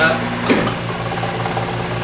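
A high-voltage neon bombarding transformer's electrical hum cuts off with a click of its switch about half a second in. A low machine hum, pulsing about five times a second, carries on after it.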